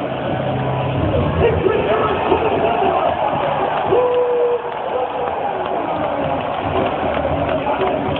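Wrestling arena crowd in a low-quality handheld recording: a steady, dense crowd din with individual voices shouting and calling out over it.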